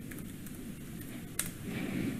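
Faint steady room noise with a single short click about one and a half seconds in.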